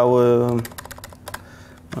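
A quick run of computer keyboard keystrokes: one shortcut (Ctrl + numpad plus) tapped about a dozen times in rapid succession. Before it comes a man's drawn-out hesitation vowel lasting about half a second.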